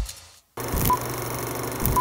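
Vintage film-countdown sound effect: short, high beeps about one a second (two here) over a steady crackle of old film running through a projector. It starts just after the last of the music fades out.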